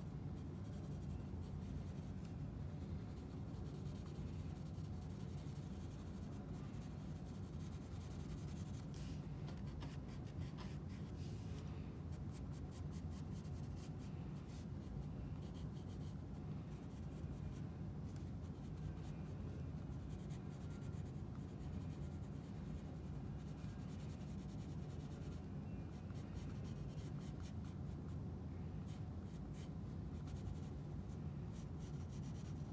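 Pencil scratching on sketchbook paper in many short, quick shading strokes, over a steady low hum.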